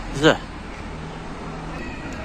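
A single brief voice-like call, bending in pitch, just after the start, over steady background noise.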